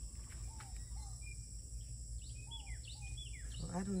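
Garden ambience: a few faint, short bird chirps, more of them in the second half, over a steady high insect trill.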